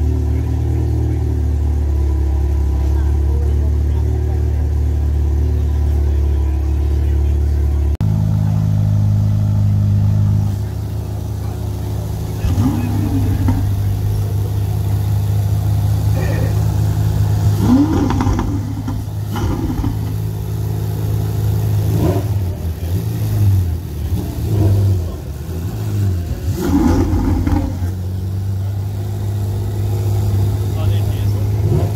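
Parked Ferrari engines idling in a steady low drone, the pitch changing at cuts about eight and ten seconds in. For the latter part it is a Ferrari 488 Spider's twin-turbocharged V8 idling, with people talking nearby.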